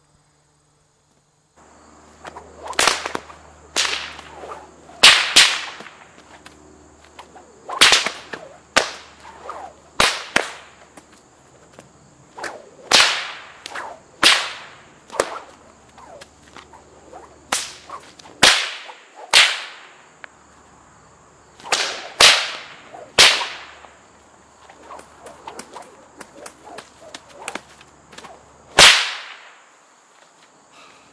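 Leather bullwhip cracking again and again, about twenty sharp cracks at uneven spacing, some in quick pairs, beginning about a second and a half in. Each crack is a small sonic boom made as the popper at the tip passes the speed of sound.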